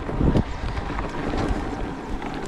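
Wind rushing over an action camera's microphone on a moving mountain bike, with scattered knocks and rattles from the bike jolting over a bumpy dirt track.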